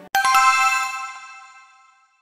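A short chime jingle: a quick run of three or four bright, bell-like notes that ring together and fade away over about a second and a half.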